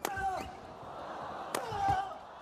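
Badminton rackets striking a shuttlecock in a fast doubles exchange, a smash and its quick defence: a sharp crack at the start and another about a second and a half in, with arena crowd voices between them.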